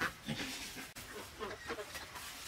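Farm animals giving many short, quick calls one after another.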